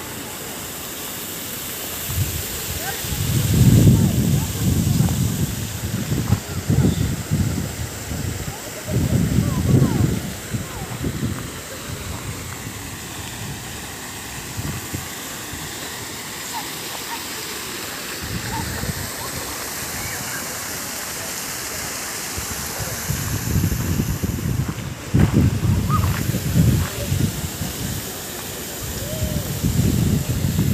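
Steady hiss of a fountain's splashing water, with several strong gusts of wind buffeting the microphone as low rumbles, and faint voices of people nearby.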